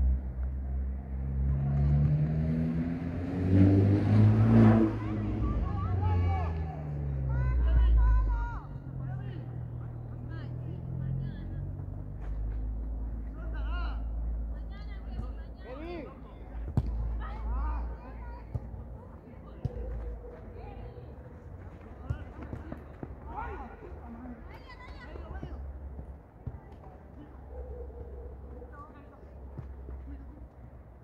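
A motor vehicle's engine passes close by, its pitch rising and then falling and loudest about four seconds in, then fading. Distant shouts and voices carry on behind it over a low rumble.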